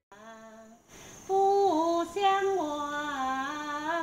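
An elderly woman singing a song alone, without accompaniment, holding notes and stepping between pitches. The singing starts about a second in.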